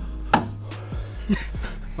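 A few sharp knocks and clatters from the cut-off sheet-metal car roof panel being handled, over background music with a steady low bass line.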